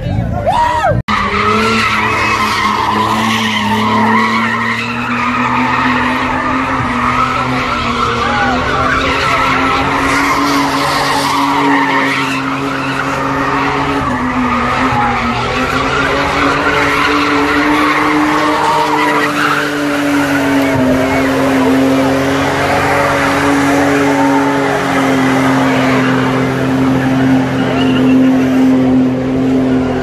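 A car engine held at high, steady revs, its pitch wavering slightly, while the tyres spin and squeal on asphalt in a long burnout. A crowd shouts over it. The sound briefly drops out about a second in.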